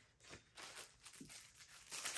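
Faint rustling of paper as budget-binder inserts and envelopes are handled.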